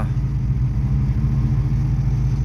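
A car engine idling with a steady, even low hum.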